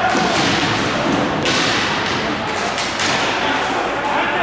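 Ball hockey play on a plastic tile court: thuds and taps of sticks, ball and feet, in several noisy surges, with voices in the background.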